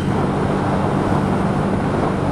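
Kymco K-Pipe 125's small single-cylinder engine running at a steady cruise, a low even drone under wind and road noise, picked up by a microphone inside the rider's helmet.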